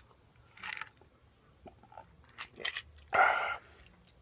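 A man drinking from a glass of iced cocktail: soft sipping and mouth sounds with a few small clicks, and a louder, noisy burst a little past three seconds in.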